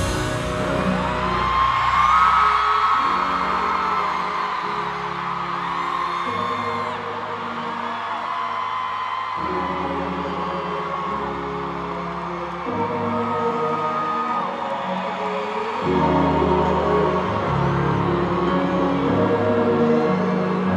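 Slow, dark live concert music over an arena sound system: held low chords that change every couple of seconds, with fans whooping and screaming over it.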